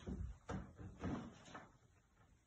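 Faint scuffling and soft thumps of a person play-wrestling with a dog on a hardwood floor, a few light knocks about half a second apart.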